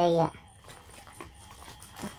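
Faint rustling of dry rice straw and a few light clicks against a wire-mesh cage as a caught frog is handled and pushed into it. Under it runs a faint, high, evenly repeating chirp.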